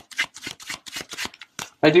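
A tarot deck being shuffled by hand: a quick run of card clicks, about seven or eight a second, that stops as speech starts near the end.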